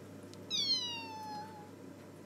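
A single high-pitched animal call, mewing or squeaking, that starts about half a second in and slides slowly down in pitch for a little over a second. It plays over a faint steady hum.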